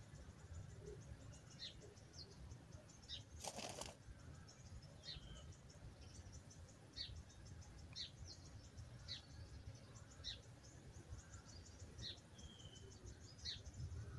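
Faint bush ambience: small birds giving short, high, downward-sliding chirps about once a second, over a fast faint insect ticking and a low rumble. A brief rustle-like burst of noise comes about three and a half seconds in.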